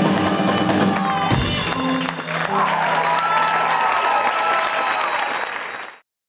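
Live rockabilly band (electric guitars, trumpet, saxophone, keyboard and drums) ending a song on a final hit about a second and a half in, followed by audience applause and cheering. The sound cuts off abruptly at the end.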